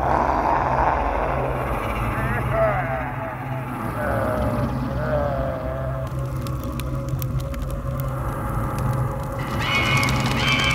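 Horror-show background score with a steady low drone, with a wavering, moan-like voice over it for a few seconds early on, then scattered faint clicks.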